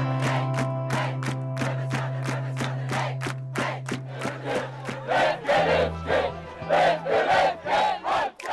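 Background music with a steady beat. From about halfway, a group of players and spectators shout a chant over it in short, repeated, loud bursts.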